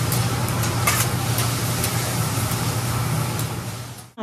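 Fried rice sizzling on a steel hibachi teppan griddle while a chef's metal spatulas scrape it and clack against the steel several times, over a steady low hum.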